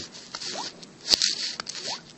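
Stylus scratching and rubbing on a tablet screen in short scratchy strokes, with a sharp tap about halfway through and a couple of brief rising squeaks.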